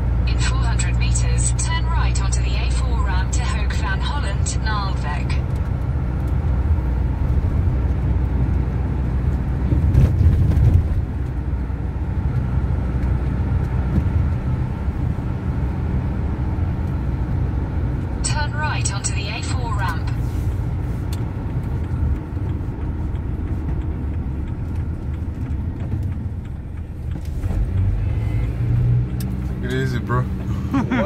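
Car interior noise while driving: a steady low engine and road rumble that swells louder briefly about ten seconds in.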